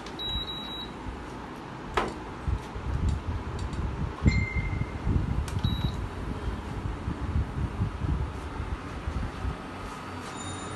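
Cookware being handled on the stove as grilling begins: irregular low knocks and rumbling, with a loud knock about four seconds in. A short squeak about two seconds in and a few brief high beeps.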